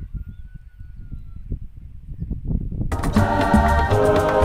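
Wind rumbling on the microphone, with a faint, thin, slightly falling whistle early on. About three seconds in, gospel-style choir music starts loudly.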